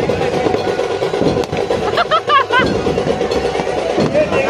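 Firecrackers inside a burning Ravana effigy crackling and popping, with one sharp crack about a second and a half in, over crowd voices and music; a voice calls out about two seconds in.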